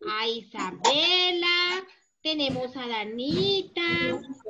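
Children singing a children's song over a video call, with long held notes and a short break about two seconds in.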